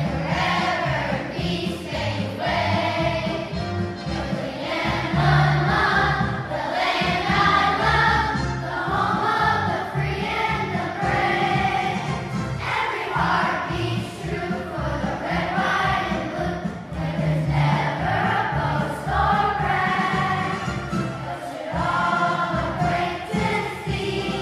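A large children's choir of fifth-grade students singing a song together, many voices in unison.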